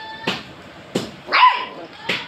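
A dog gives one short, sharp bark about one and a half seconds in, between a few sharp clicks spaced well under a second apart.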